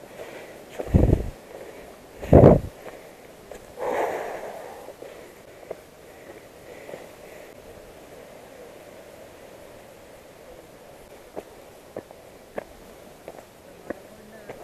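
Wind gusts buffeting the microphone: two short, loud rumbles near the start and a weaker one soon after, then a low steady rustle. Near the end come a few light footsteps on a dirt trail.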